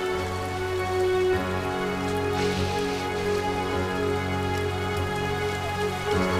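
Steady rain falling, with soft background music of held chords over it.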